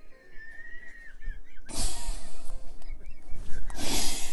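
A donkey braying: a loud, harsh, wheezing call that breaks in about halfway through and surges again near the end.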